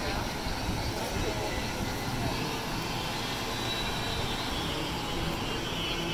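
Outdoor pier ambience: a steady low rumbling noise with the voices of people in the background.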